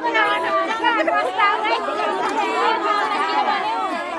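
A group of women chattering and laughing over one another, several voices at once.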